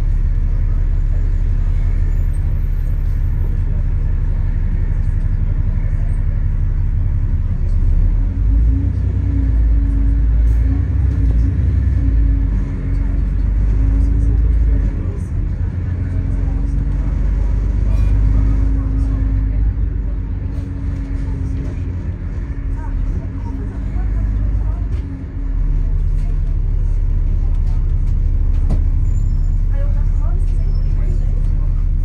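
Double-decker bus engine heard from inside the upper deck: a steady low rumble at standstill, working harder as the bus pulls away about eight seconds in, easing off, and settling back to a steady idle after about 25 seconds as the bus stops.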